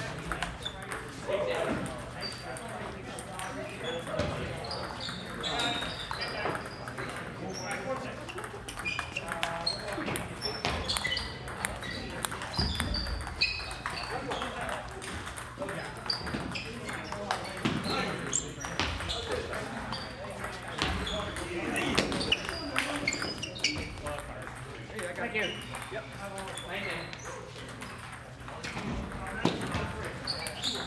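Ping-pong balls clicking sharply off paddles and tables in irregular runs, from this rally and several others going on at once, over the chatter of voices.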